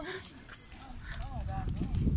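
Wind rumbling on the microphone outdoors, growing stronger near the end, with a few faint, short rising-and-falling calls in the background.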